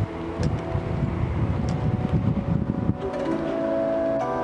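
Wind buffeting the microphone, with faint background music under it; the wind noise cuts off suddenly about three seconds in and the music carries on alone.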